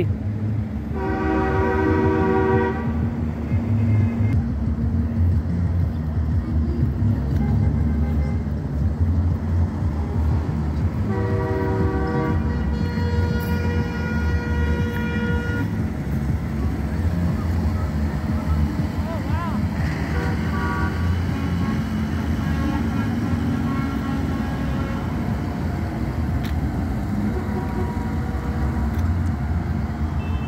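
Diesel tractor engines running as lit-up parade tractors pass, a steady low rumble. A horn is held for about two seconds about a second in, and again for about four seconds starting about eleven seconds in.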